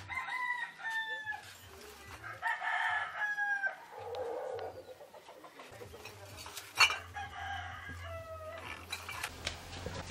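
Roosters crowing several times, each crow a long, slightly falling call, with a single sharp click about seven seconds in.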